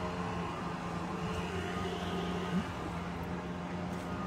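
Steady street ambience with a low, even engine hum.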